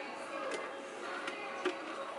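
A few quiet clicks and taps of a clear acrylic canister and its lid being handled, over a low steady background.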